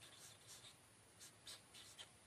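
Felt-tip marker writing on paper: a series of faint, short strokes of the tip across the sheet.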